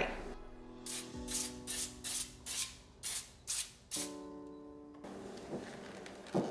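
Aerosol can of nonstick cooking spray sprayed in about eight short hissing bursts over about three seconds onto a foil-lined baking pan. Quiet background music plays under it.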